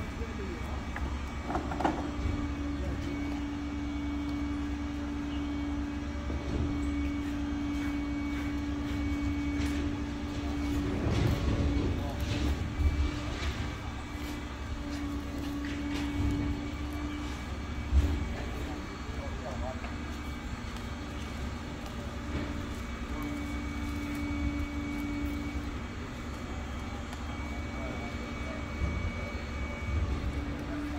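Street background with a steady engine-like hum that drops out now and then. Occasional rustling, and one sharp knock about eighteen seconds in, as bedding and debris are handled.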